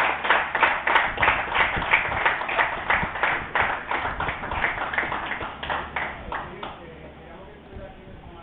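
A small group of people clapping, several claps a second, growing quieter and stopping about seven seconds in.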